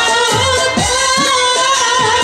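Bengali jatra song: a woman singing a long, wavering held line into a microphone, with live band accompaniment and low hand-drum strokes that bend down in pitch about twice a second.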